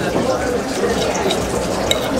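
Steady dining-room background of murmuring voices, with a knife and fork working through pierogi on a plate and a single sharp clink of cutlery near the end.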